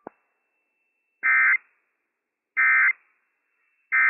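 Emergency Alert System end-of-message (EOM) digital data bursts: three short, identical buzzy bursts about 1.3 seconds apart, the coded signal that closes the weather radio test broadcast. A brief click comes just before them.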